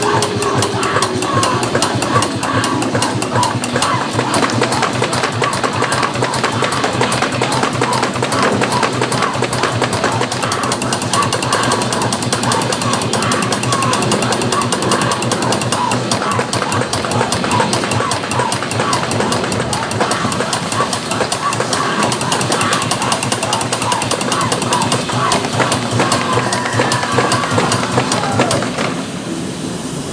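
Electric-chair sound effect from a pneumatic Halloween electric-chair prop: a loud, continuous rapid crackling buzz of electricity, with a wavering voice-like cry over it. The buzz eases slightly near the end.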